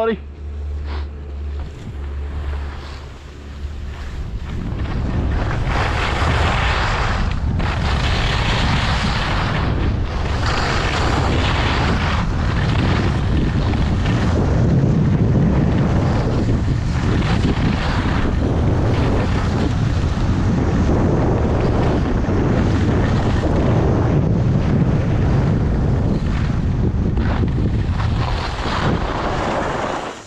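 Wind rushing over the camera microphone as the skier goes downhill, mixed with skis scraping and hissing on packed, groomed snow. The noise grows louder about four seconds in as speed builds, then swells and eases about every two seconds with each turn.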